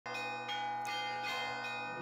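Church bells ringing, a fresh stroke about every 0.4 seconds, five strokes in all, each one ringing on under the next.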